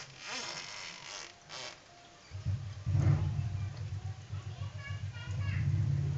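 Indistinct voices in the first second or two, then a low, fluttering rumble from about two seconds in that becomes the loudest sound.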